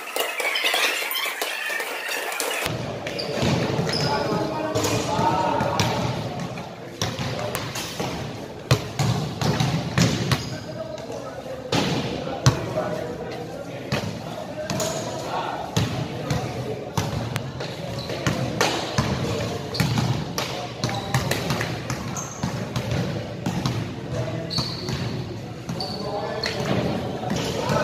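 Basketballs bouncing on a hardwood-style indoor court, an irregular run of sharp thuds ringing in a large, echoing gym, over people talking.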